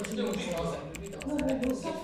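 A person's voice with a run of quick, irregular light clicks over it, much like typing.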